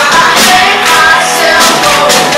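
A live rock-blues band playing loud: electric guitars, bass guitar and a drum kit with cymbals, with a woman singing lead.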